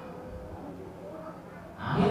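A man speaking into a microphone: a short lull with only faint voice sounds, then he resumes speaking loudly near the end.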